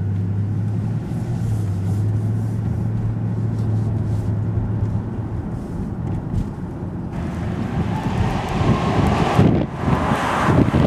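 Cabin drone of a 2007 Jaguar XKR's supercharged V8 while driving, a steady low hum that fades about five seconds in. From about seven seconds in, a louder rushing noise takes over, with wind on the microphone.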